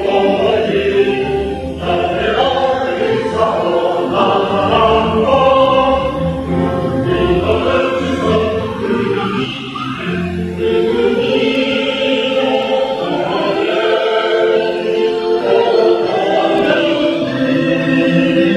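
A choir singing a choral cantata, with long held notes and changing chords.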